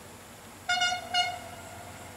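Diesel locomotive horn on a freight train, sounded as two short toots about half a second apart, a little under a second in.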